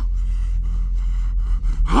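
A man breathing hard, one long strained breath during a physical struggle, over a steady low hum.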